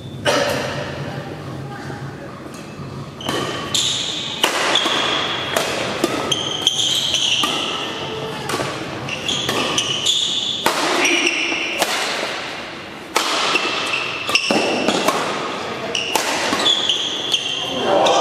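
A badminton rally: sharp racket strikes on the shuttlecock roughly once a second, and court shoes squeaking in short high chirps on the hall floor, over spectators chatting.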